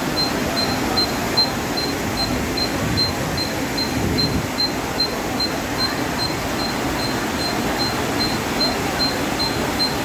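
Steady rush of floodwater flowing along a street, with a faint high-pitched beep repeating two or three times a second.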